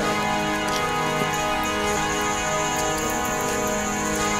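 Instrumental music: steady held chords that sustain evenly without breaks, with a faint high shimmer joining about two seconds in.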